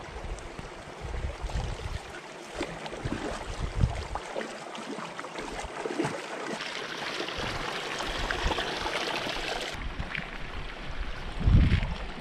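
Hands splashing and scooping in shallow water in a small rock-lined hot spring pool, with many small splashes and knocks and a stretch of steadier splashing in the middle. A loud low bump near the end.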